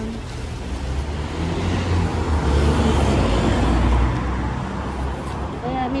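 A car passing on the street, its engine rumble and tyre noise building to loudest around the middle and then fading. Under it is the rustle of a plastic rubbish bag being lifted out of a wheelie bin.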